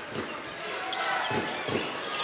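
A basketball bouncing a few times on a hardwood court, a few short dull thuds, over steady arena crowd noise.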